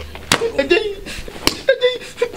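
Two sharp slaps about a second apart, hand blows landing on a person, with a man's voice crying out between them.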